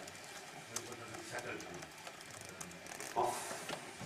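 Quiet room tone with a man's brief hesitant "um" and, near the end, a single spoken word. There is a faint click about three quarters of a second in.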